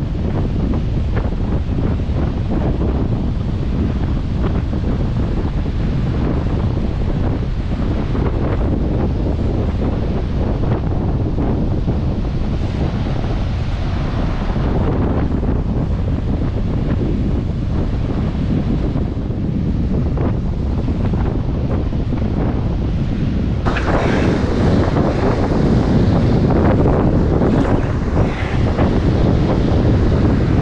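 Wind buffeting the microphone over the steady wash of surf breaking on a sandy beach. About three-quarters of the way through the noise turns brighter and a little louder.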